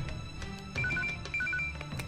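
Mobile phone ringtone: two quick groups of short, high electronic beeps alternating between two pitches, starting about a second in, over soft background music.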